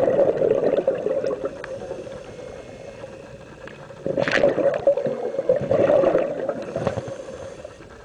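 A scuba diver's regulator breathing underwater. A gurgling burst of exhaled bubbles at the start, a quieter stretch, then a brief hiss about four seconds in and a second long bubbling exhalation.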